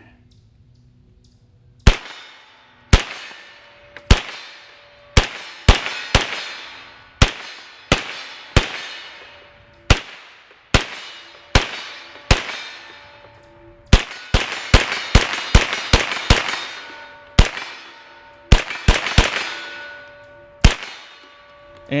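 About two dozen semi-automatic shots from a Sterling Mk.6 9mm carbine, starting about two seconds in, fired one at a time at an uneven pace with some quick runs, each hit answered by a ringing steel target.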